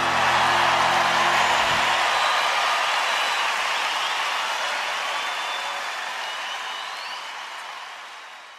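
Audience applauding and cheering with a few whistles, fading out slowly. The last acoustic guitar chord rings under it for the first two seconds.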